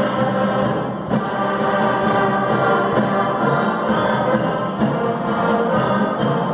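Youth concert band of woodwinds and brass (clarinets, saxophones, flutes, trumpets) playing, with long chords held steadily.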